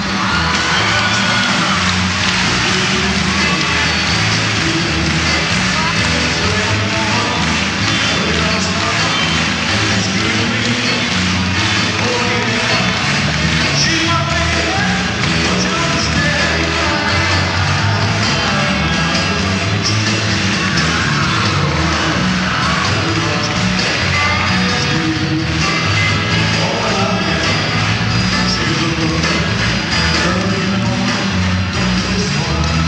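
Live rock-and-roll band playing at full volume with a lead vocal, over a cheering arena crowd, from a 1970s concert recording.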